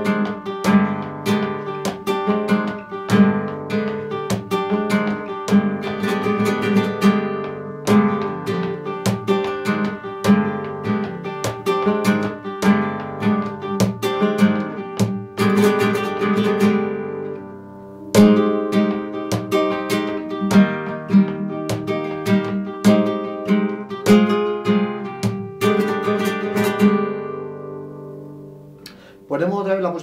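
Flamenco guitar with a capo playing a bulería compás por arriba in E: strummed and rasgueado chords with sharp attacks in the bulería rhythm. A short break a little over halfway, then more chords, the last of which ring and fade near the end.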